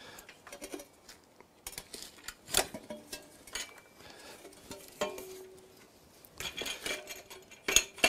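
Aluminium scaffold ladder sections and tubes clinking and knocking together as they are handled and fitted, with a few short metallic rings.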